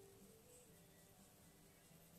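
Near silence: faint room tone, with the fading end of a short steady electronic tone in the first half-second.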